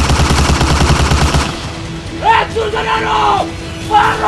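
A rapid burst of automatic gunfire, about a dozen shots a second, cuts off about a second and a half in. A man's drawn-out shouting follows.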